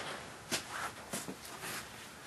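A few faint, short scuffles and taps of rabbits moving about on the wire floor of a cage.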